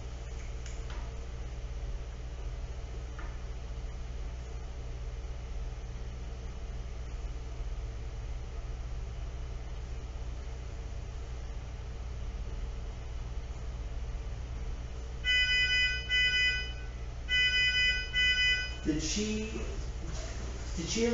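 Steady low hum of running equipment, then about fifteen seconds in, two short bursts of loud, high electronic beeping from a device's alarm or timer.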